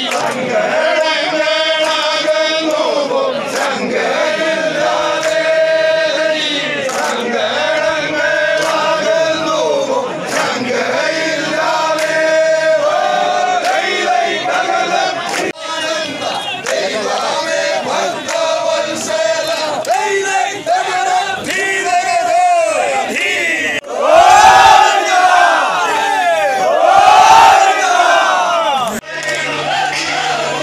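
A group of men chanting and singing in unison, a traditional Vanchipattu boat song, in short repeated phrases on held notes. Near the end the voices get louder, with swooping rising-and-falling calls.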